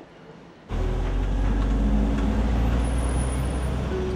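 City street traffic: cars and other vehicles driving by with a steady, heavy low engine and road rumble, starting suddenly just under a second in.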